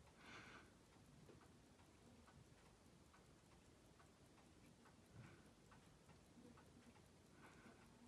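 Near silence with faint, rapid, evenly spaced ticking, plus a few soft taps of steel tweezers on the watch movement.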